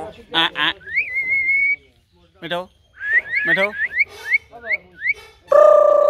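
Close-up whistling and voice-like calls from a pet common myna and the man it sits on: two harsh calls, then a held whistle. A run of short rising whistle notes follows, about three a second. The loudest sound is a long steady hooting tone near the end.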